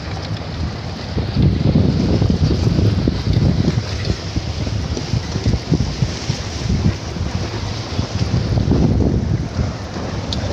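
Wind buffeting the microphone of a phone riding in a moving safari jeep, in gusts that swell and fade, over the low rumble of the vehicle on a dirt track.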